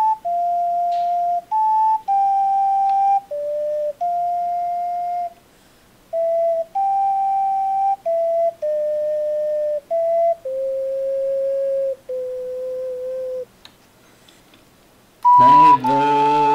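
Solo ocarina playing a slow melody of held, pure notes that step downward in pitch overall, with two short pauses. About a second before the end, a louder, fuller sound with deep bass comes in.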